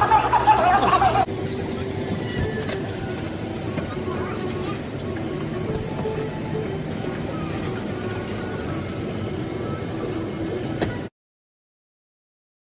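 Airliner cabin ambience: a steady hum of the aircraft's air and machinery. It follows about a second of louder voices and cuts off abruptly about a second before the end.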